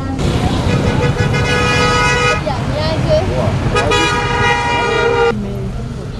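A vehicle horn sounding two long blasts, the first about two seconds long and the second about a second and a half, with voices between them over steady traffic rumble.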